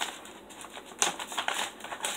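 Paper packaging rustling and crinkling as it is opened by hand, with irregular small clicks and a sharper burst of rustle about a second in.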